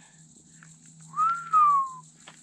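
A single whistled note about a second long. It rises briefly, then glides slowly down in pitch.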